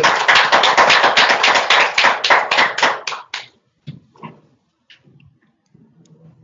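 Audience applauding, dense clapping that stops about three seconds in, followed by a few faint scattered clicks.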